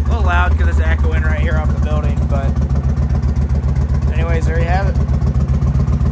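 2020 Indian Challenger's warm PowerPlus V-twin idling steadily through a Freedom 2-into-1 turn-out exhaust, on Stage 2 cams and a Stage 2 reflash.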